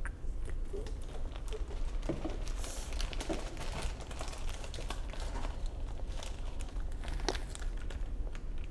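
Soft rustling and scattered light clicks of small handling movements, over a steady low hum.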